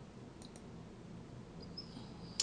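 A computer mouse button clicked once, a quick press and release heard as two faint clicks close together.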